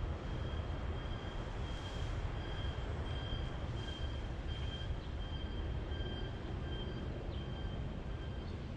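Outdoor background noise: a steady low rumble with a faint, high-pitched chirp repeating about twice a second.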